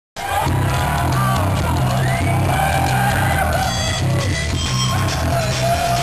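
Rap-metal band playing live and loud, with a heavy, steady bass line and drums, heard from within the audience.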